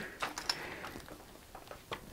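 A few faint light clicks and rustles of plastic parts being handled, as a vacuum cleaner's power cord is untangled and its hose is worked loose; the vacuum itself is not running.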